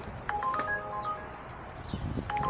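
A quiet electronic melody of short notes, each struck and then held, stepping between a few pitches.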